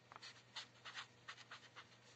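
Marker pen writing on paper: a run of short, faint scratching strokes as a word is written out.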